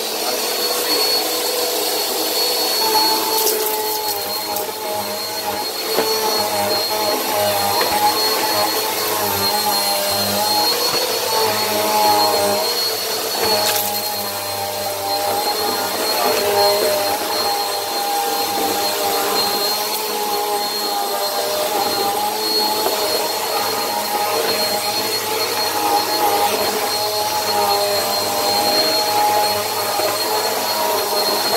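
Bissell PowerForce Helix bagless upright vacuum running on a tile floor: a steady motor whine with a high whistle, its pitch wavering slightly. Two brief sharp clicks, a few seconds in and near the middle.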